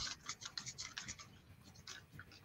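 Palette knife scraping and mixing oil paint and cold wax on a palette, in quick, short scratchy strokes, several a second.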